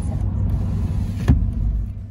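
Road and engine noise of a moving car heard from inside the cabin: a steady low rumble, with one sharp knock a little over a second in.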